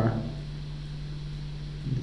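Steady low electrical hum in a pause between spoken words, with the end of one word at the start and the next word beginning near the end.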